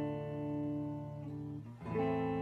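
Clean electric guitar, a Fender Stratocaster through a Peavey 6505MH amp with the gain rolled off, picked up by a phone microphone in the room: a held chord rings and slowly fades, one note changes about two-thirds through, and after a brief gap the next chord is struck right at the end.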